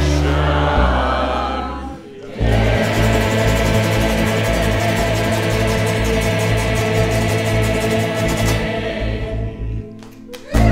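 Folk song played live on a steel-string acoustic guitar and upright bass, with a choir of voices singing along. A held chord dies away about two seconds in. Then the strummed guitar and bass come back in with a steady beat and fade out near the end.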